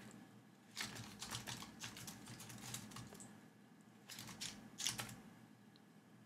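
Computer keyboard typing: faint short runs of keystrokes, one about a second in and another around four to five seconds in.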